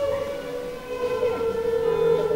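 A long, steady, siren-like held tone with overtones, its pitch wavering slightly.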